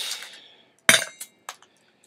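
Ice cubes dropping into a metal cocktail shaker and clinking against it: a ringing clink at the start, a louder one about a second in, then two lighter ones.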